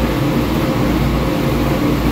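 Steady low hum of running machinery aboard a ship, holding several unchanging tones.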